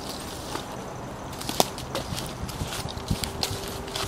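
Footsteps on dry fallen leaves, an irregular run of crackles and rustles starting about a second in.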